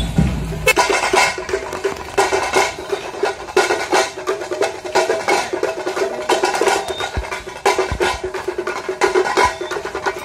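Music carried by fast, dense drum and percussion strikes over a steady held tone.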